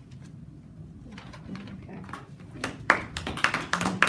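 A small group clapping. Scattered claps build to loud, dense clapping about two and a half seconds in.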